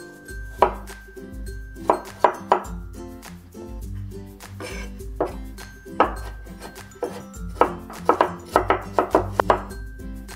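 Broad kitchen knife chopping canned water chestnuts into small dice on a wooden cutting board: scattered single chops, then a quicker run of chops near the end.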